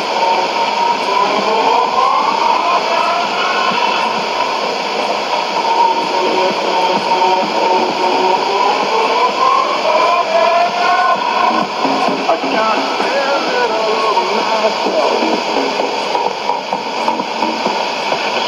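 Electronic music from a shortwave AM broadcast, received on a Sony ICF-2001D and heard through a steady hiss of static, with a wavering melody line running through it.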